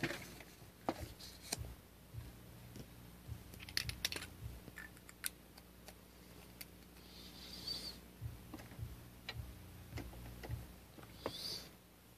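Quiet desk handling sounds: light clicks and taps of a pen and a card-stock swatch card being handled on paper, with a few brief scrapes of card or pen sliding, over a faint steady low hum.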